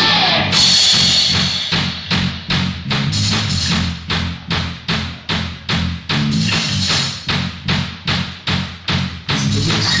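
Live rock band playing: a dense crash-cymbal and guitar wash that thins out about a second and a half in, leaving a steady drum beat of two to three hits a second over bass guitar notes.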